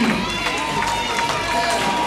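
Roller skates rolling and clacking on a rink floor over crowd chatter, with a few sharp knocks and a steady thin tone underneath.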